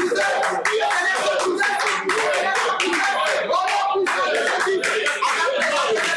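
Hands clapping in a fast, uneven stream, with voices going on over the clapping.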